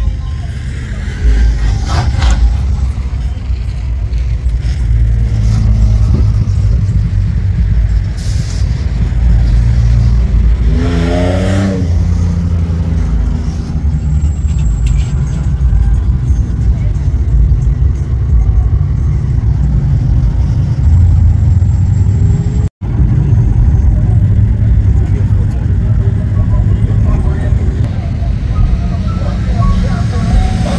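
Lowered mini trucks cruising past on the street: engines running and tyres on the road, under a deep low rumble throughout. A short wavering pitched sound comes about eleven seconds in, and the sound cuts out for an instant about two-thirds through.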